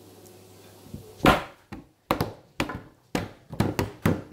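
Fingers tapping and handling a phone at its microphone: an irregular run of sharp taps and knocks beginning about a second in, several a second.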